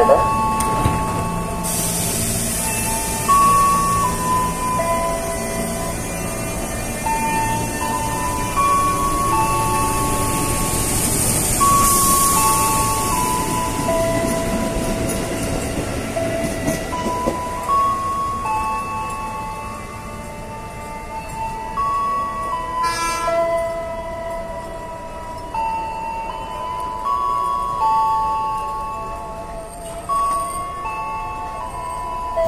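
Ex-JR East 203 series electric commuter train pulling out and running out of the station, its rumble fading away after about twenty seconds. A background music melody of steady stepped notes plays over it throughout.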